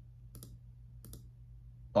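Faint clicking from computer controls: two pairs of quick clicks about half a second apart, over a steady low hum.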